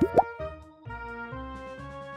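A quick rising cartoon 'bloop' sound effect right at the start, then light background music for children with steady held notes.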